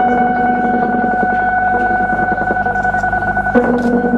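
Electronic synthesizer music: a sustained organ-like drone of several held tones over a fast flickering pulse. The lower notes shift about three and a half seconds in.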